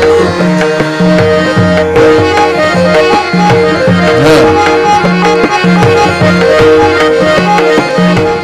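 Tabla and harmonium playing together as Indian classical accompaniment: a steady run of tabla strokes under a harmonium melody of held and repeated notes.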